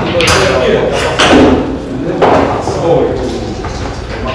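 Indistinct men's voices talking in a room, with a few short knocks in among them.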